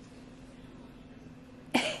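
Quiet room tone with a faint steady hum, then near the end a sudden loud burst as a woman starts to speak, saying "Say bye" to her baby.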